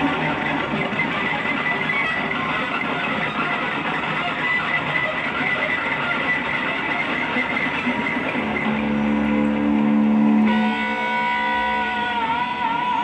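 Live rock band playing, led by electric guitar; over the last few seconds the music settles into long held notes.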